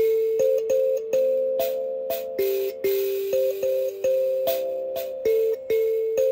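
Mbira dzavadzimu plucked by thumbs, single metal keys sounding one at a time in a simple repeating note pattern carried through the song's chord cycle. There are about two notes a second, each ringing on and fading under the next.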